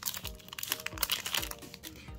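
Foil Yu-Gi-Oh! booster pack wrapper crinkling in the hands as the cards are slid out, over soft background music with a steady low beat.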